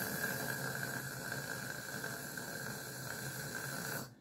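A steady hiss with a faint high tone running through it, cut off suddenly at the very end.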